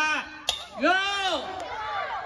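A single sharp crack about half a second in, then a man's loud shout of "Go" that starts a children's tug-of-war, with crowd chatter after it.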